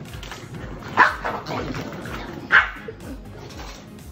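Corgi barking twice, sharp single barks about a second and a half apart.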